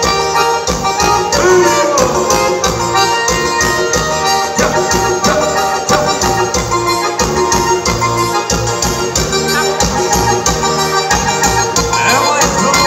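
Live forró music: an electronic keyboard playing a sustained organ-like lead over a steady beat, with no words sung.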